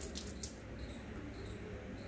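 Hands rubbing water through wet hair and over a forehead, with soft squishing and dripping and a couple of short wet clicks early on.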